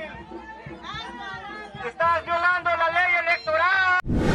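Mostly speech: a raised, fairly high-pitched voice talking without a break over background crowd chatter, with a faint steady low hum underneath.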